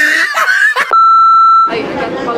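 A person's drawn-out, wavering vocal groan, then a loud, steady electronic beep at one pitch lasting under a second, which cuts off abruptly.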